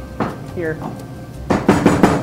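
Garlic being crushed with salt on a hard surface: a quick run of sharp knocks that starts about a second and a half in.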